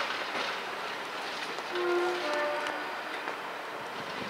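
Class 47 diesel locomotive running slowly with a train of coaches over station pointwork. About two seconds in, a short horn sounds for about a second.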